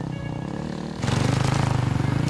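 Motocross bike engine running under background music. About a second in the sound jumps louder, with wind rush on the microphone added to the engine.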